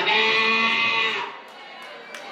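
A woman's voice through a handheld microphone holding one long, steady vowel for about a second, drawn out at the end of a phrase, then breaking off into quiet.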